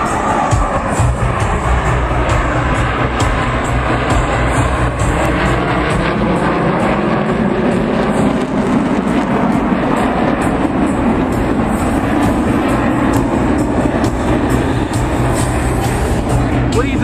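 Blue Angels F/A-18 Super Hornet jets flying over, with continuous jet engine noise that falls in pitch over the first few seconds and builds into a deeper rumble through the second half. Music plays underneath.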